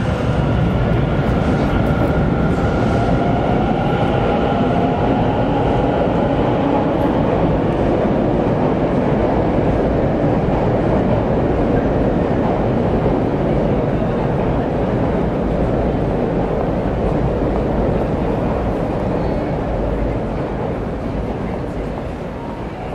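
A train running past at close range, loud and steady for about twenty seconds. High steady tones sound over the rumble in the first several seconds and then fade, and the noise tails away at the end.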